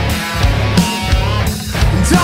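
Loud hard rock music with electric guitar from the band's studio recording.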